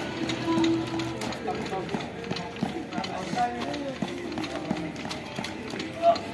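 Quick, irregular footfalls of people exercising on paving, heard under voices and background music.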